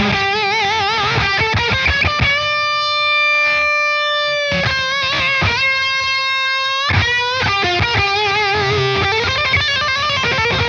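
Electric guitar through a Redbeard Effects Honey Badger fuzz pedal, with its volume pushing a crunch amp's front end, playing a lead line. The notes are long and sustained, with wide vibrato and string bends, and one held note is cut off sharply about seven seconds in.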